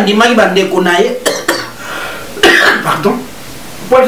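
A man speaking, with a short cough about two and a half seconds in.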